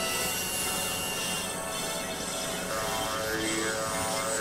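Experimental electronic synthesizer music: a dense, noisy drone with several held tones, joined about three seconds in by repeating pitch sweeps that rise and fall.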